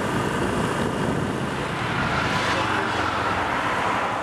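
Steady street traffic noise: an even engine rumble with hiss and no breaks.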